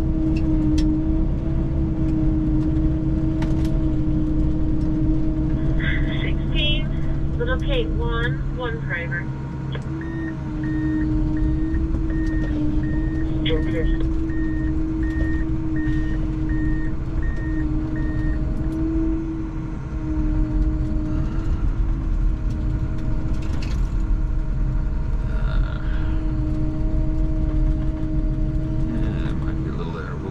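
Snowcat engine and tracks running steadily, heard from inside the cab as a continuous drone with a steady hum. Around the middle, a regular series of short high beeps sounds for about eight seconds.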